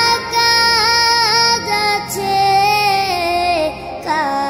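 A high, young-sounding voice singing a Bengali Islamic devotional song about prayer, with held, ornamented notes over a soft steady backing; a phrase steps down and ends near the end.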